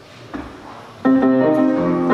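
A short lull with a small knock, then about a second in a song begins: a run of clear, ringing instrumental notes with new notes every half second or so.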